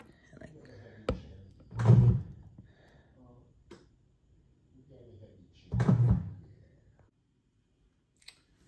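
Bread machine punching down the rising dough: a click, then two short low bursts a few seconds apart as the kneading paddles turn briefly and knock the dough.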